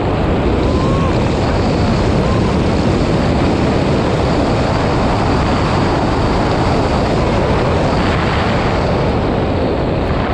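Wind rushing over the helmet-camera microphone, a loud steady roar, as a tandem parachute canopy swings through steep turns.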